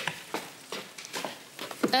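Quiet room tone with a few faint clicks and rustles; a voice says a short word near the end.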